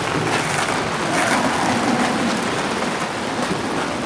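Steady hiss of rain on pavement, with a skateboard rolling over the wet asphalt.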